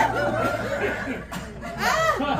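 Audience laughing, many voices chuckling at once. The laughter eases off past the middle and swells again near the end.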